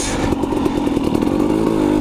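Two-stroke KTM dirt bike engine running at fairly steady revs under way, with a brief hiss of noise right at the start.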